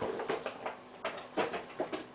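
Hands handling a cardboard toy-figure box and its packaging: a run of short, irregular taps, scrapes and rustles.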